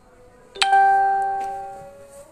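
A single bell-like chime strikes about half a second in and rings out, fading away over about a second and a half.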